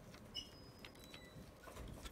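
Faint sounds of oil paint being mixed on a palette: a few light clicks and a brief high squeak about half a second in.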